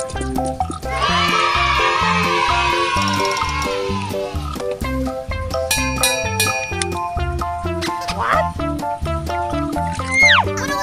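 Background music with a steady beat and plucked-sounding notes, with a sweeping sound effect about one to four seconds in and a short rising glide near the end.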